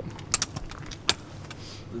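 A few sharp metallic clicks and a short jingle from small gear being handled or shifted, over a low steady hum.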